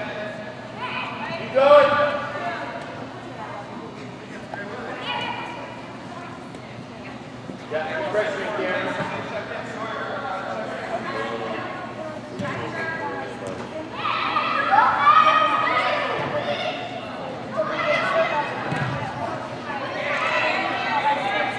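Voices of players and spectators shouting and calling out during an indoor youth soccer game, in a large echoing hall, with one loud shout about two seconds in and a louder stretch of shouting near the end.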